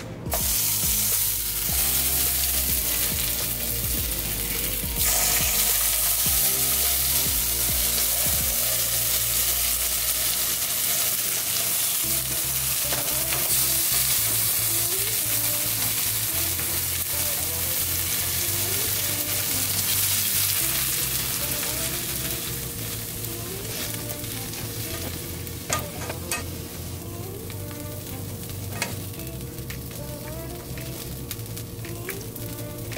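Tomato slices sizzling as they fry in hot oil in a nonstick skillet. The sizzle grows louder about five seconds in and eases off toward the end, with a couple of sharp taps near the end.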